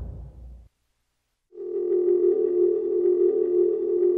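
Background music fading out, a moment of silence, then a steady electronic tone like a dial tone starting about a second and a half in and holding.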